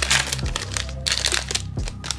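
Foil wrapper of a 2021 Panini Rookies and Stars football card pack being torn open and crinkled in the hands, a quick run of crackles.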